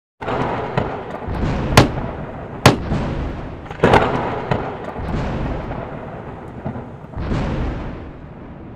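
Thunder sound effect: a rumbling storm with three sharp cracks in the first four seconds, then swelling rumbles that slowly die down.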